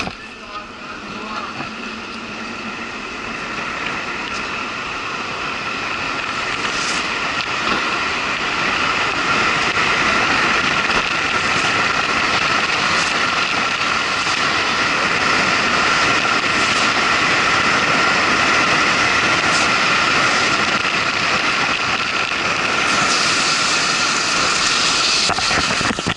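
Big Bobby-Car downhill racer rolling down an asphalt road, its wheels giving a steady whirring rolling noise that grows louder as it speeds up to over 50 km/h, then holds. A few brief clicks come through along the way.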